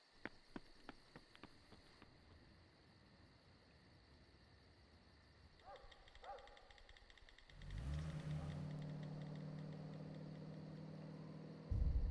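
Crickets chirping in a fast, even rhythm at night, with a few sharp clicks in the first second or so. A low, steady hum comes in about two-thirds of the way through and gets suddenly louder just before the end.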